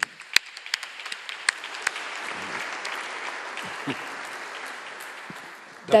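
Audience applauding: a few sharp, close claps at the start, then steady applause that swells over the first couple of seconds and slowly dies away.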